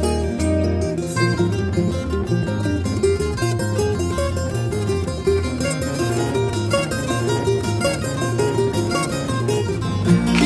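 Instrumental break: Irish bouzouki and 12-string guitar picking quick notes over a steady electric bass line, with no singing.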